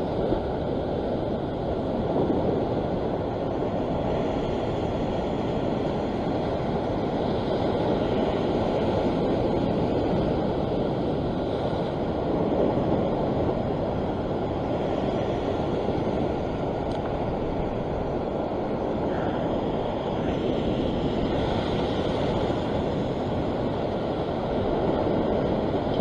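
Ocean surf washing over a rock ledge: a steady rushing wash that swells gently now and then.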